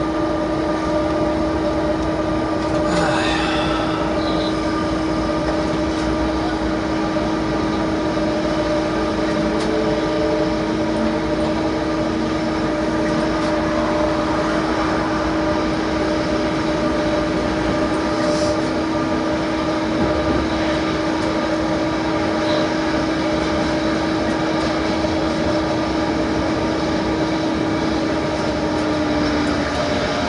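Running sound of a DB class 186 electric locomotive hauling a freight train of about 900 tonnes, heard from the driver's cab. A steady hum holds one pitch throughout over the even rumble and hiss of the moving train.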